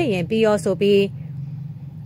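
A narrator's voice reading a news report, breaking off about a second in, over a steady low hum.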